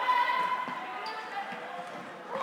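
Floorball game in a sports hall: a player's high-pitched call, loudest in the first half-second, over light taps of sticks, ball and feet on the court floor.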